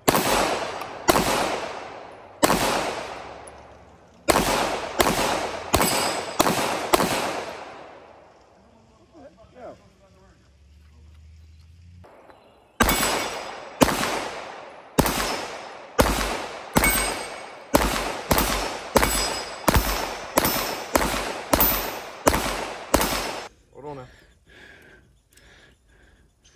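9mm pistol shots: a string of about nine shots in the first seven seconds, then a pause, then a faster, even string of about twenty shots at roughly two a second from a Canik TP9 Combat Elite with a compensator. Each crack trails off in a short echo.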